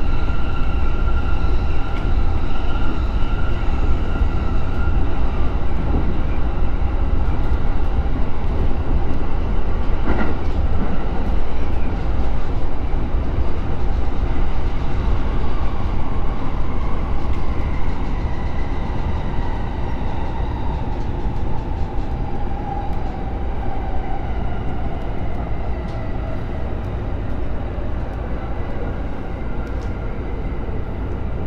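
Inside the front car of a JR East E231-series electric train: a steady rumble of wheels on rail. Over the second half the traction motors' whine falls in pitch and the rumble eases as the train brakes into a station.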